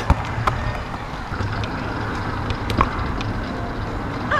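Electric powerchair moving over tarmac: a steady low motor hum and tyre rumble. There is a sharp knock right at the start and another a little under three seconds in.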